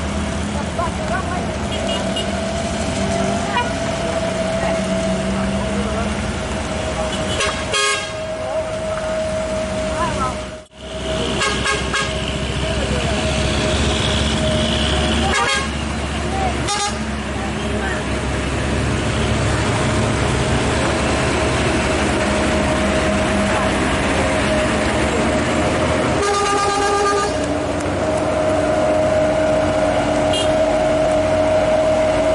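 Roadside din of people talking among idling and passing vehicles, with a vehicle horn honking for about a second near the end.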